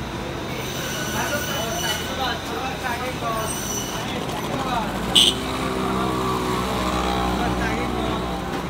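Street ambience: scattered voices of passers-by, then a vehicle engine running steadily through the second half, with one sharp click about five seconds in.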